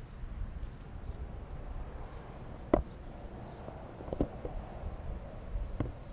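Balloons and tape being handled against a car roof: a few sharp taps and knocks, the loudest about three seconds in, with faint rubbing between them. Under it is a steady low rumble of wind on the microphone.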